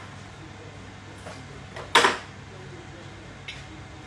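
A single sharp clack about halfway through, as a small kitchen item, here a salt container or its wooden lid, is set down on the benchtop, with a couple of faint ticks of handling. A low steady hum runs underneath.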